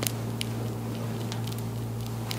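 A steady low hum with a few faint, scattered clicks.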